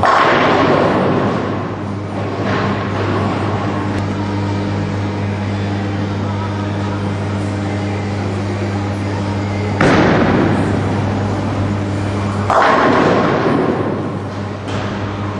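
Tenpin bowling pins crashing as balls hit them: once at the start, then twice more near the end about three seconds apart, each crash fading over a second or two. A steady low hum runs underneath.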